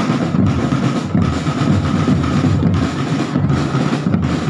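Marching drumband playing together: multi-tom tenor drums, bass drums and cymbals beating a dense, continuous rhythm, loud and unbroken.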